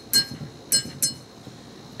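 A metal spoon tapping against the rim of a small bowl, three sharp clinks with a short ring, knocking tomato paste off the spoon.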